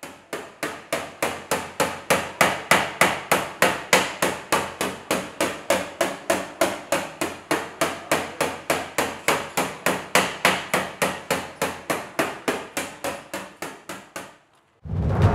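Even, rhythmic knocking: sharp strikes at a steady pace of about four a second, each dying away quickly, with no change in pace or strength.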